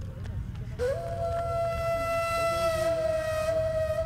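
Background music: a flute-like wind instrument holds a long, steady note that steps up to a higher pitch about a second in, over a low steady rumble.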